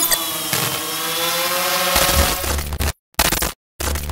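Quadcopter drone buzz used as an intro sound effect: a steady motor drone whose pitch wavers slightly. A deep bass hit comes in about two seconds in. The sound cuts off abruptly about three seconds in, followed by two short stuttered bursts.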